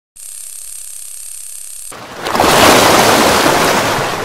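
Logo-sting sound effect: a steady hiss, then about two seconds in a loud whoosh that swells up and slowly dies away.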